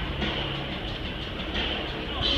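Light-show soundtrack playing over a large outdoor loudspeaker system: a steady, rumbling passage with a few low held tones, between louder stretches of music.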